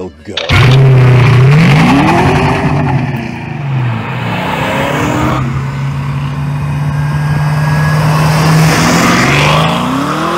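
V8 of a 1980 Fox-body Mustang, a Windsor 302 stroked to 347 cubic inches, accelerating hard. It starts suddenly and loud about half a second in, rises and falls in pitch twice, holds a steady pitch for a few seconds, then climbs again near the end.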